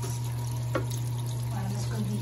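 Top-load washing machine filling: a stream of water pours from the inlet onto the clothes in the drum, over a steady low hum, with a short click about three-quarters of a second in.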